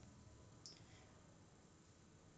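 Near silence: room tone, with a single faint click about two-thirds of a second in, as the presentation slide is advanced.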